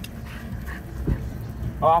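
Puppies play-fighting, heard as faint dog sounds over low background noise, with a soft knock about a second in. A man's voice starts near the end.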